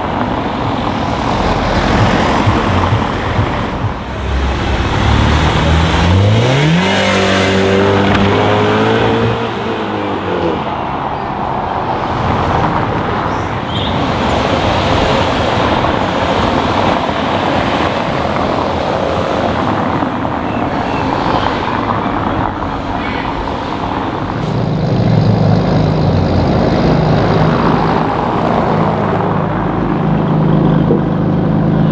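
Cars driving along a brick-paved street, with steady tyre and traffic noise. About six to eight seconds in, one car accelerates with a rising engine note, and near the end a deep engine note runs steadily.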